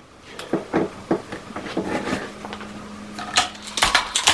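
.22 air rifle being handled and readied for the next shot: a series of sharp mechanical clicks and clacks, the loudest pair near the end. A faint steady hum runs through the second half.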